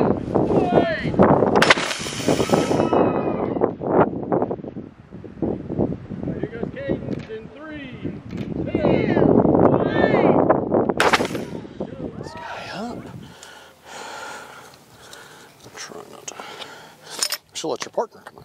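A compressed-air water bottle rocket launches about two seconds in with a short, sharp rush of escaping air and water, among children's voices and calls. A second short burst of noise comes near the middle.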